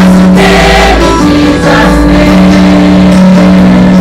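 Loud gospel choir music: sustained low instrumental chords, with choir and soloist singing over them.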